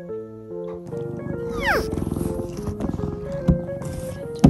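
Background music, and from about a second in a cat purring close to the microphone while it rubs its face on a cork coaster. A short falling whistle-like tone sounds soon after the purring starts.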